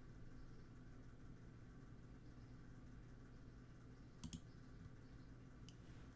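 Near silence over a low steady hum, broken by a quick double mouse click about four seconds in and a fainter single click near the end.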